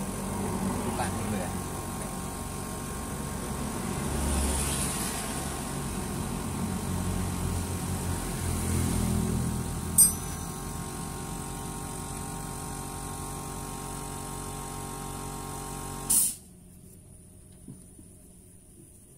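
Steady mechanical hum of a running engine, with a single sharp click about ten seconds in. A brief loud noise near the end, then the hum stops abruptly and only faint background is left.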